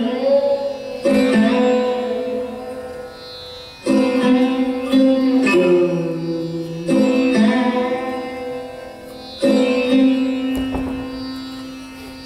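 Sarod played solo in a slow unaccompanied passage: single plucked notes every couple of seconds, each ringing and fading slowly, some sliding in pitch.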